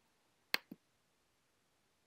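A cordless brad nailer firing once: a single sharp click, followed a fraction of a second later by a fainter, lower knock.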